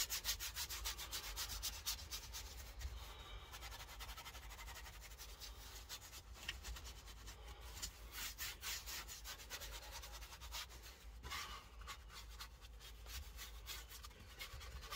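Detailing brush scrubbing foamed cleaner into the plastic centre console of a car, a fast run of short scratchy back-and-forth strokes, fairly faint.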